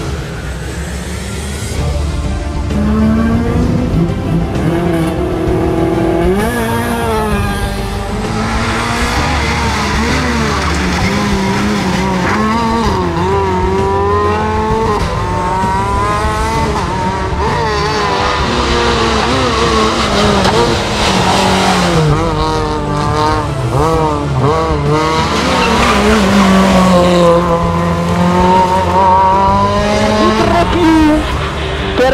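Rally car engine revving hard, its pitch climbing and dropping again and again as it works up and down through the gears, with tyres squealing at times.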